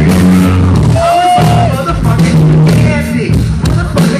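Live band playing a loud, steady groove on bass, electric guitar and drums, with a man's voice freestyling into a microphone over it.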